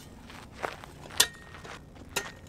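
Steel shovel scraping and crunching through the ash and charcoal of an open pottery firing, pulling the coals away from the fired pots so they can cool. There is a short scrape just past half a second and a sharper one a little after a second.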